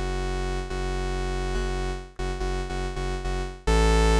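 A sampled synthesizer waveform played from Kontakt as a steady held note, struck again several times in quick succession in the second half, then coming in louder and brighter near the end. It plays back lower in pitch than the key pressed: the sample is not tracked properly, its root key mapped wrong.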